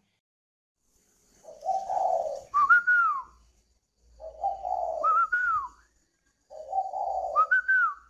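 Spotted dove calling: the same cooing phrase three times, about every two and a half seconds. Each phrase is a low, rough coo followed by a higher, clear note that rises and then falls.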